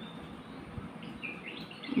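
Faint background hiss with a few short, high bird chirps in the second half.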